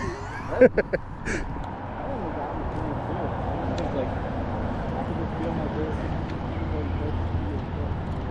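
A man laughing in short bursts during the first second and a half, then a steady low hum with faint, muffled talk beneath it.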